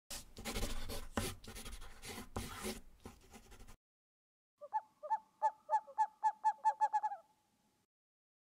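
Logo intro sound effects: scratchy pen-stroke rubbing with several louder strokes for the first few seconds. After a short gap comes a run of about a dozen short, gliding pitched calls that come faster and faster.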